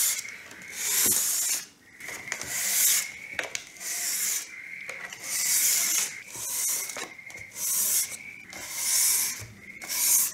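600-grit sandpaper rubbed by hand over a dried coat of water-based craft lacquer on a wooden stand, in slow, gentle strokes about one every second or so. This is the light sanding between coats, done to knock down a raised, slightly rough surface before recoating.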